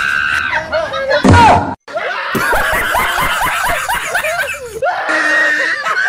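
High-pitched shrieking and chattering voices, with a loud falling shriek about a second in, a short sudden break, and a held high cry near the end.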